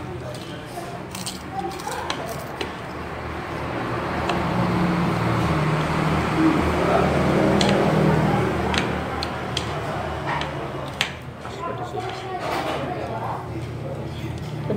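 Background chatter of a busy eatery over a steady low hum, swelling in the middle, with scattered sharp clicks of chopsticks and cutlery against plates.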